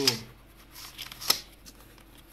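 Hands handling a Samsung SSD and its small cardboard retail box: soft rustling and a few light clicks, with one sharp click a little past a second in.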